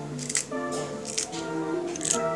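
Scissors snipping through green chili peppers a few times, short crisp cuts over steady background music.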